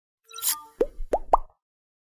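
Animated logo intro sound effect: a brief high swish, then three quick rising pops, each higher than the last.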